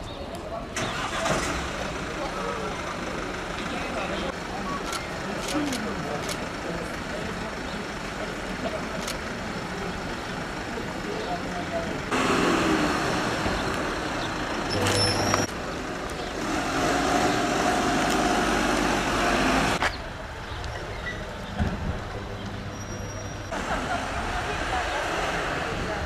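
Street ambience with a diesel van's engine running and the van driving off, and people's voices in the background. The sound changes abruptly several times where the shots are cut together.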